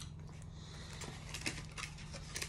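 Faint, irregular clicks and crackles close to the microphone, over a low steady hum.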